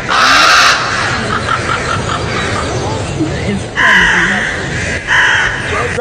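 A large flock of black birds calling all at once, a dense, loud chorus of overlapping cries with louder surges near the start, about four seconds in and again about five seconds in.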